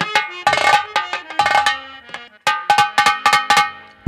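Drumming from the live nautanki accompaniment: loud, sharp, ringing drum strokes in quick flurries, with a brief break about two and a half seconds in.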